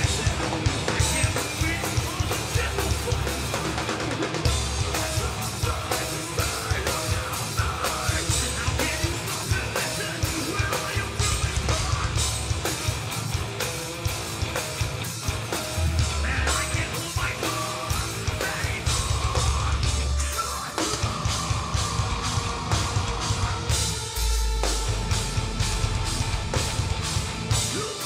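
Live metalcore band playing at full volume: distorted electric guitars, bass guitar and a drum kit with heavy kick drum and cymbals, with a shouted vocal.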